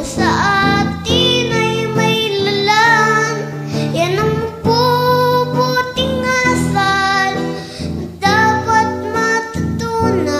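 A song: a high voice sings the melody, holding long, wavering notes over instrumental accompaniment.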